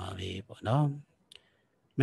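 A man's voice giving a Buddhist sermon in Burmese, speaking for about a second and then pausing, with one short faint click in the pause.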